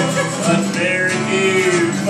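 A man singing a country song live, accompanying himself on a strummed acoustic guitar, holding one long note in the second half.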